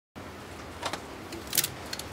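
A few light clicks and a brief sharp rustle about a second and a half in, from small parts and wiring being handled in a car's engine bay.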